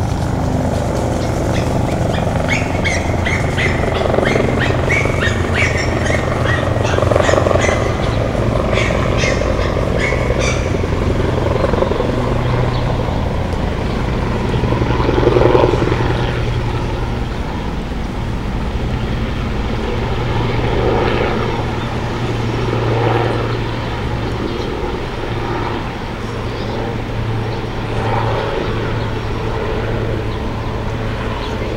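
Steady low hum of outdoor city ambience, traffic and building machinery, with a run of short high chirps and clicks between about two and ten seconds in.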